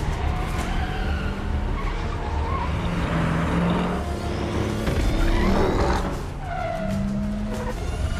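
Film chase sound mix: vehicle engines and traffic with tyre squeals, laid over music.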